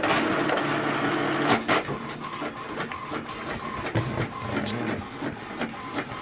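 HP Envy 6030 inkjet all-in-one printer running a black-and-white copy job: its mechanism runs steadily, louder for the first second and a half, with a few sharp clicks.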